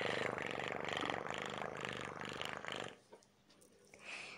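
A domestic cat purring, a fast rattling pulse that swells and eases about three times a second and stops about three seconds in.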